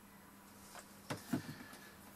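Quiet room tone, with a few faint short sounds a little after a second in.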